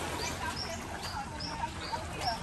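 Small birds chirping in the beachside trees: short, high, slightly hooked notes, two or three a second, over a steady low background rumble.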